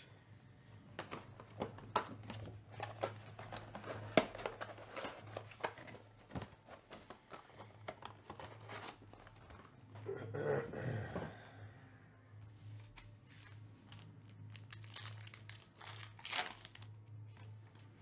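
Hands opening a Topps Chrome Black trading-card box: cardboard and plastic packaging crinkling and tearing, with scattered small clicks and rustles over a steady low hum.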